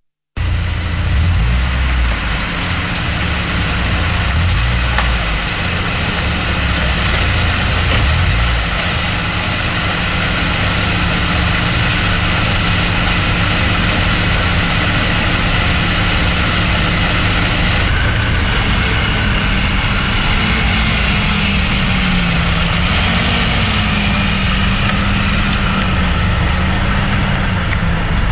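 Car engine running amid steady street traffic noise. About two-thirds of the way through, a low drone comes in and wavers up and down.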